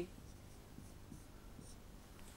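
Faint short strokes of a marker pen writing on a whiteboard.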